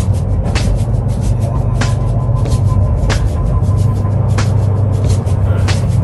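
Semi truck cab at highway speed: a steady low drone of engine and road noise, with music playing over it and a sharp tick about every second and a quarter.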